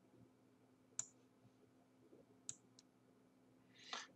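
Near silence with three short clicks from working a computer, the sharpest about a second in and two fainter ones about halfway through.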